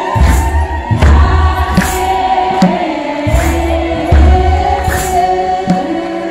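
An Ethiopian Orthodox church choir chanting a hymn together in unison, over a deep, regular drum beat. Sharp jingling or clapping accents fall about once a second.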